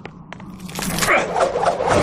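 Cartoon scene-transition sound effect: a swelling magical whoosh that builds up a little under a second in, after a few faint clicks.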